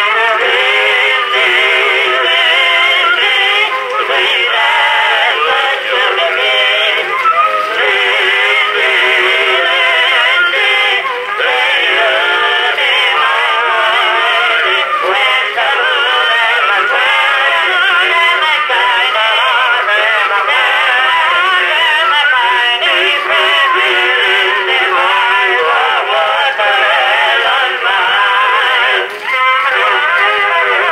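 Edison Red Gem Model D cylinder phonograph playing a two-minute Edison cylinder record through its horn: male voices singing with accompaniment. The sound is thin, confined to the middle range with no bass or treble.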